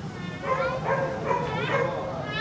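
A dog whimpering and yipping several times in short, high, wavering calls.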